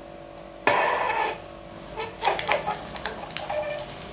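Hot oil with black mustard seeds sizzling in a small tempering pan as sliced green chilies go in: a sudden burst of sizzle about half a second in, then steady crackling from about two seconds on.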